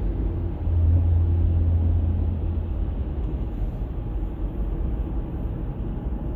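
Steady low rumble of a car heard from inside its cabin, swelling slightly for a second or two about a second in.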